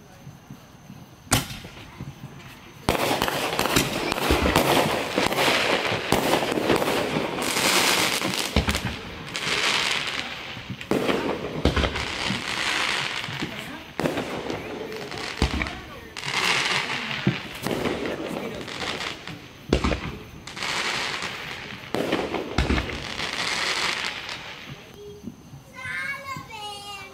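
Fireworks going off: a single sharp bang about a second in, then from about three seconds on a continuous crackling that swells and fades every few seconds, with several sharp bangs from aerial shells bursting.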